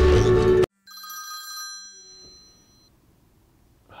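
Loud music cuts off abruptly less than a second in, and a phone ringtone follows: a ring of several high steady tones that fades away over about two seconds.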